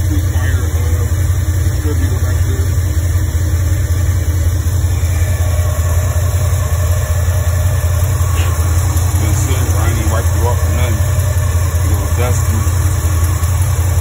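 Chevrolet Camaro engine idling steadily, a loud even low drone.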